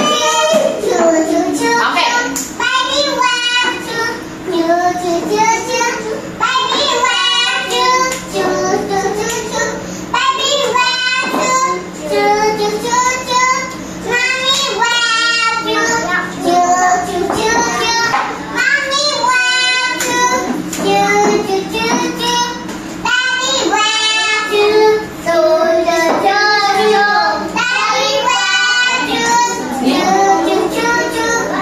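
A group of young children singing a song together in a classroom.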